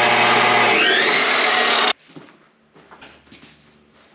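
Ryobi chop saw cutting through steel pipe: a loud, steady grinding screech that cuts off suddenly about two seconds in, leaving only faint sounds.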